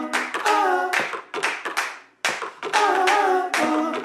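Soundtrack song made of rhythmic hand claps and singing voices. It breaks off briefly about two seconds in, and another clap-and-vocal passage begins.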